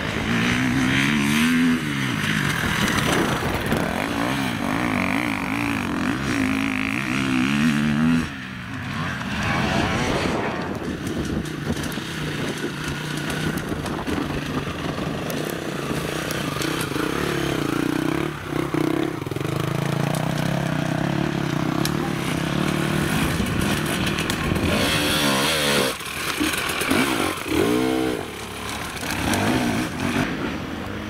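Enduro dirt-bike engines revving in quick throttle bursts, the pitch rising and falling rapidly as riders pick their way up a rocky trail.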